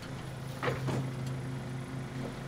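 A low steady hum with two short knocks close together a little under a second in.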